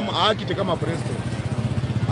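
A motorcycle engine running at a steady idle close by, with a fast, even pulsing. A man's voice is heard briefly at the start.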